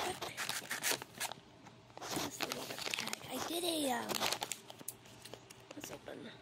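Toy mystery-pack packaging crinkling and tearing in irregular bursts as it is opened by hand.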